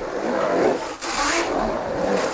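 Skateboard wheels rolling over the concrete of an empty swimming pool. The rolling noise swells and dips as the rider carves up and down the wall, with a brief dip about a second in.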